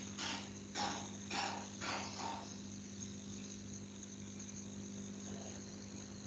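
Quiet room tone: a steady low electrical hum with a faint high steady whine, and a few faint short sounds spaced about half a second apart in the first two seconds.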